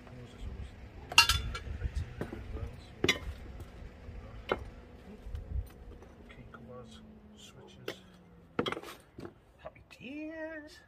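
Loose metal car parts clinking and knocking as they are sorted by hand in a cardboard box: a handful of sharp clinks, the loudest about a second in.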